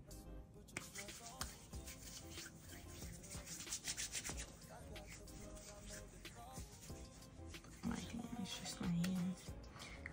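Hands rubbing cocoa butter into the skin of the face in soft, uneven strokes, over faint background music. A low voice is heard briefly near the end.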